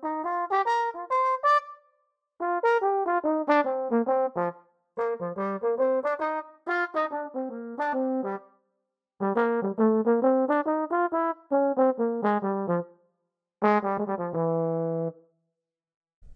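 Sampled tenor trombone from the Big Swing Face library playing about seven short phrases of quick notes, with brief gaps between them and a held final note near the end. Convolution reverb places it at different spots on a stage, so the sound moves from phrase to phrase as the stage location is switched.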